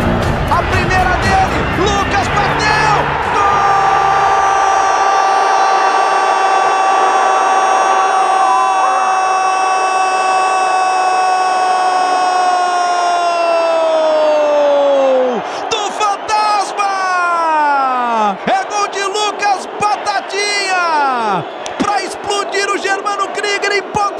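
A Brazilian football commentator's long drawn-out goal cry, one note held for about twelve seconds and then falling away, followed by a string of shorter falling shouts, over a cheering stadium crowd.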